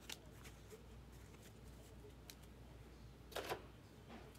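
Baseball trading cards being handled: a few faint light ticks, then a brief louder double slide or rustle of card against card about three and a half seconds in.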